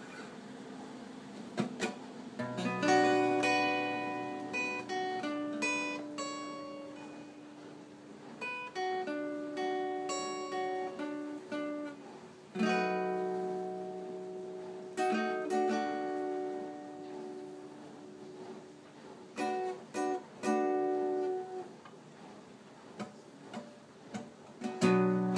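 Cutaway acoustic guitar played solo, chords ringing out with short pauses between phrases, starting about two and a half seconds in, with a run of short, clipped chords near the end.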